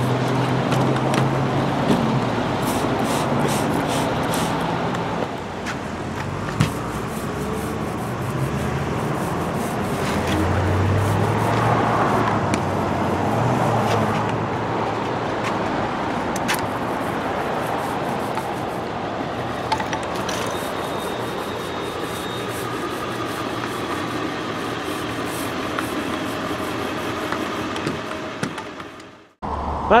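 Street traffic noise: cars passing, a steady rushing sound that swells and fades, cutting off abruptly near the end.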